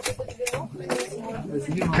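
Several people talking over one another as a group moves along, with a few sharp clicks or knocks among the voices.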